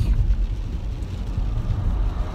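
Car ventilation fan switched on and blowing hard, a steady rushing noise over a low rumble, loud enough that it is about to be turned down.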